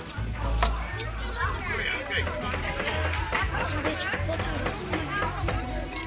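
Indistinct chatter of several voices, with music playing underneath.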